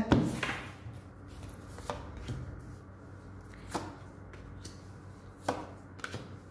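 Tarot cards being drawn from a deck and laid down on a table: four sharp taps, about two seconds apart, with faint handling noise between them.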